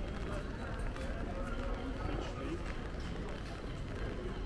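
Busy city street ambience: indistinct voices of passers-by talking and footsteps on paving, over a steady low rumble of town noise.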